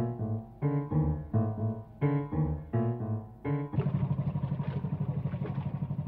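A short tune of separate piano-like notes, then, near the end, a barge's engine chugging with a steady, rapid beat.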